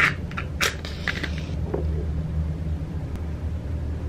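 A wooden match struck on a matchbox: a short scrape and a sharp strike about half a second in, then a brief hiss as it catches, over a steady low background rumble.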